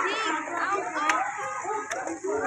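Many children's voices talking and calling out at once, an overlapping chatter of a crowd of schoolchildren.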